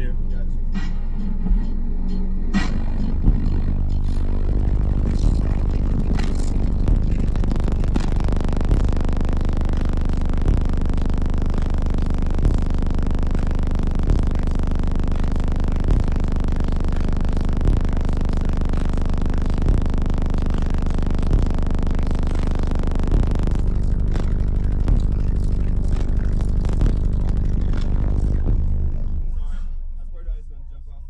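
Bass-heavy music track played at very high volume through a competition car-audio subwoofer wall, the cabin filled with deep bass and a regular beat about every two seconds. The track cuts off near the end.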